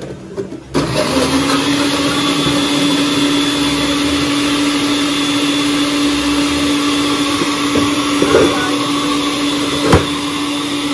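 Electric bar blender switching on about a second in and running steadily, a constant motor hum.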